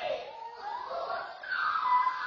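A child's high voice crying out twice in drawn-out cries that rise and fall in pitch.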